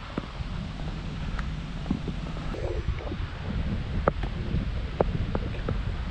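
Wind buffeting the microphone of a helmet-mounted action camera, a steady low rumble, with a few faint scattered clicks.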